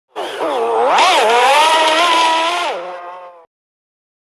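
Sports car engine revving hard: a quick blip up and down about a second in, then held high and climbing slightly, before the revs drop and the sound fades out near the end.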